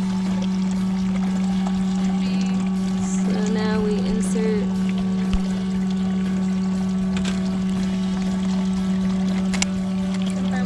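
Small electric water pump humming steadily, pushing water through a tube over a white bass's gills to keep it breathing during tagging surgery. Two sharp clicks come about five seconds in and again near the end as a tag gun is worked.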